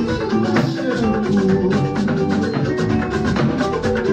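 Live praise-and-worship band music with guitar and drums, playing a steady, even beat.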